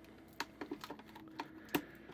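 Light, irregular clicks and small scrapes, about a dozen in two seconds, from a screwdriver tip prying at corroded batteries in a plastic toy's battery compartment.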